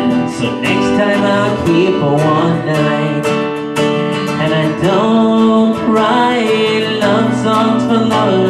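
Steel-string acoustic guitar strummed in a steady rhythm, with a man singing a held, drawn-out line over it.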